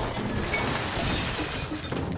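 Glass lab equipment shattering and crashing, a dense run of breaking glass and falling debris with no pause.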